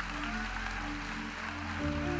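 Soft, sustained keyboard pad chords held steadily under the pause, moving to a new chord near the end.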